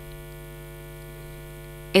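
Steady electrical mains hum on the audio line: a low buzz with a ladder of evenly spaced higher overtones, unchanging throughout.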